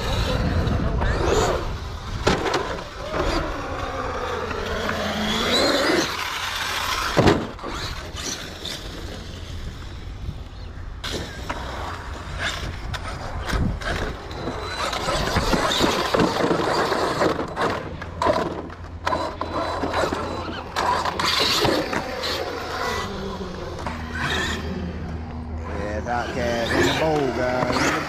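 Brushless electric drive of an 8S RC monster truck whining up and down in pitch as it accelerates and brakes around a concrete bowl, with a sharp impact about seven seconds in. Voices are in the background.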